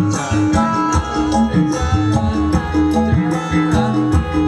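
Live music from a Javanese reog/jaranan ensemble: drums and tuned percussion playing a fast, repeating rhythmic pattern.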